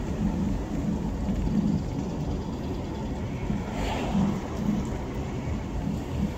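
Steady rumble of a car driving along a city street, heard from inside the cabin: road and engine noise.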